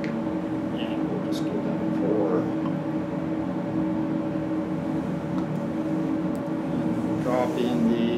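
Steady low mechanical hum of several steady tones, with a few faint handling sounds and brief low mutters over it.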